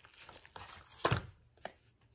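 Plastic tie-dye kit parts and packaging being handled on a towel: rustling, with a sharp knock about a second in and a lighter one shortly after as pieces are set down.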